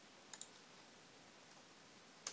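Near silence, with a close pair of faint clicks from operating a computer about a third of a second in and a fainter click later.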